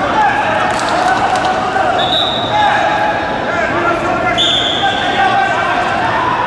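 Wrestling hall ambience: coaches and spectators shouting and talking over one another without a break, with a few thuds about a second in. Two short, high-pitched whistle blasts come about two seconds in and again about four and a half seconds in, as the bout restarts.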